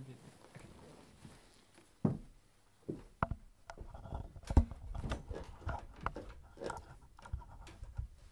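Scattered knocks, footsteps and handling noises as a person gets up from a sofa, crosses a small room and settles onto a wooden piano stool, with the loudest thump about four and a half seconds in.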